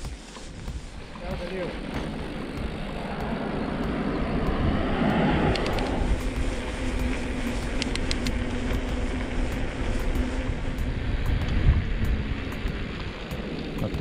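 Wind buffeting a handlebar-mounted action camera and mountain bike tyres rolling over a gravel-dusted road, growing louder over the first few seconds as the bike picks up speed, then holding steady.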